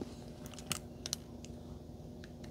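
A few faint, sharp clicks and ticks from hands handling small objects, spaced irregularly over a faint, steady low hum.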